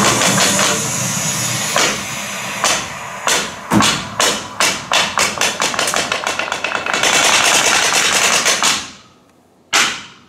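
Kabuki wooden clappers struck in an accelerating run, the beats closing up into a rapid roll that cuts off suddenly, then one sharp single strike near the end as the closing pose is struck.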